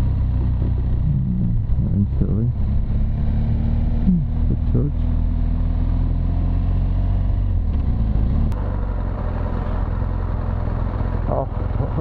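BMW R1200 GS Adventure's boxer-twin engine running steadily at low road speed, heard from on the bike along with air noise. The sound carries on, slightly quieter, after a cut about eight seconds in.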